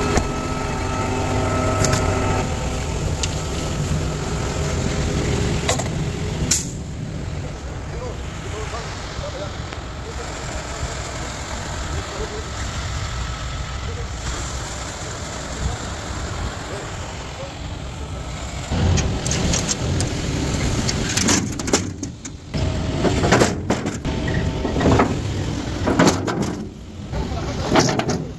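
A heavy truck's engine running, with wind rushing on the microphone. For the first couple of seconds there is a steady hum with several pitched tones. In the last third the sound turns choppy and uneven.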